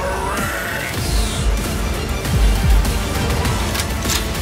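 Music with a heavy beat, deep bass hits coming in about a second in.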